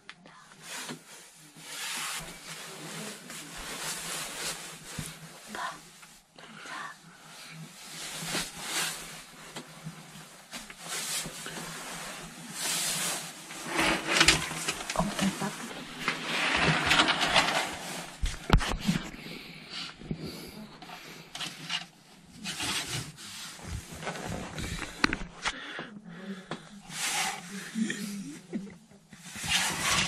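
Rustling of fabric from bedding, a bunk curtain and clothing, with knocks from handling the camera, coming in irregular bursts that are loudest in the middle.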